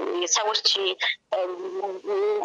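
A voice narrating in Amharic, with a short pause a little over a second in.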